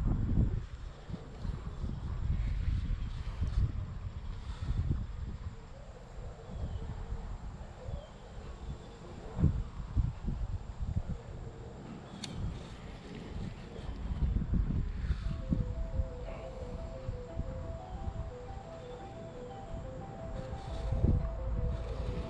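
Wind buffeting the microphone in gusts, with quiet background music of held notes that comes through more clearly in the last third.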